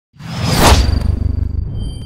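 Logo-reveal sound effect: a whoosh that swells quickly to its loudest point under a second in, over a deep rumble, with a glassy shattering burst, then dies away while a thin high ringing shimmer lingers.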